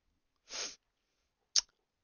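A woman's short, breathy burst about half a second in, sneeze-like, followed by a single sharp click about a second later.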